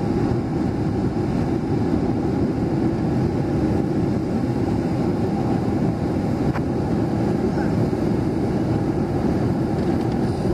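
Steady low rumbling outdoor noise at a rocky tidepool shore, with one faint click about six and a half seconds in.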